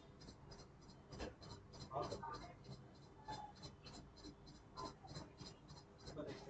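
Faint writing sounds with a few low, indistinct voices, over a soft regular ticking of about four to five ticks a second.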